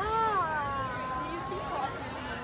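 A high-pitched voice crying out a long, drawn-out "ohh" that rises, falls and is then held nearly level for most of two seconds.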